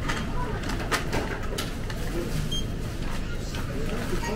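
Self-checkout barcode scanner giving one short high beep about two and a half seconds in, over steady supermarket hum and background chatter, with a few clicks and rustles of items being handled.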